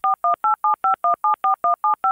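A rapid run of telephone touch-tone (DTMF) dialing beeps, each a short two-note tone, about six a second with the note pair changing from beep to beep.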